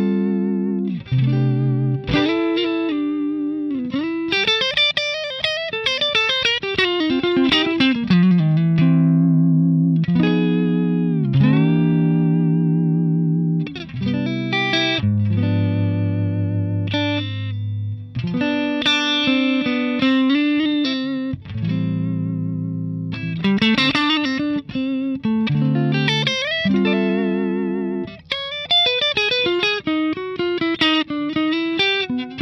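Electric guitar, a Suhr Custom Classic, played through a Ceriatone Prince Tut (a Princeton Reverb-style amp) at volume 12 o'clock with negative feedback fully on and EQ at noon, no reverb or tremolo. It plays a run of chords and single-note phrases with string bends, heard from a 2x12 open-back cabinet with WGS ET65 speakers.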